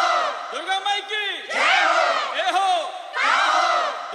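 Sampled crowd chanting or shouting in the intro of a DJ remix: layered voices calling out repeated phrases that rise and fall in pitch, a new swell about every one and a half to two seconds, with no beat or bass yet.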